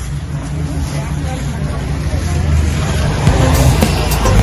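Background music with a steady low bass line, gradually growing louder.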